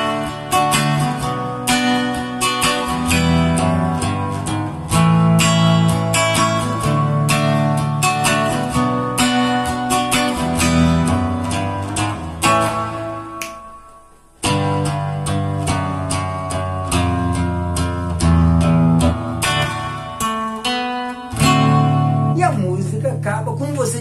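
Nylon-string silent guitar played through the ending of a song: strummed chords with bass runs, finishing on a D and a D7. The sound dies away briefly about halfway through, then the playing picks up again.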